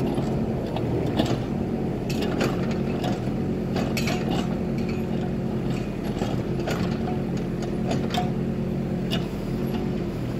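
Kubota micro excavator's small diesel engine running steadily under load while the arm and bucket dig into dirt, with irregular clicks and clanks from the bucket, pins and stones.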